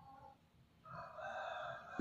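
Faint, distant rooster crowing: a pitched call that trails off just after the start, then one longer drawn-out note from about a second in, lasting about a second.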